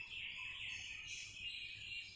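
Marker pen squeaking on a whiteboard while a word is written: a quiet, uneven run of short high squeaks.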